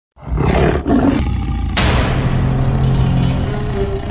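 A tiger roar sound effect, heard twice in the first second. A sudden loud swell a little under two seconds in leads into music with a held low note.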